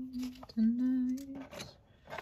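A woman humming two long, steady notes, the second a little lower, with a short break between them.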